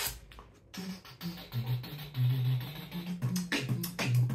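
Solo beatboxing: a hummed bass line stepping between low notes, with sharp mouth-made percussion over it, growing loud about a second and a half in.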